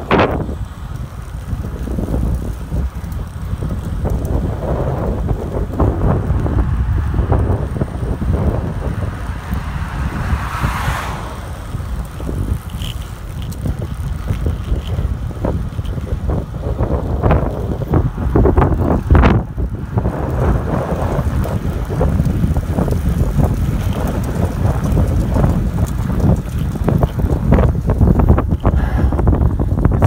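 Wind buffeting the microphone of a camera carried on a moving road bicycle: a loud, gusty rumble throughout, with a short swell of noise a little before the middle.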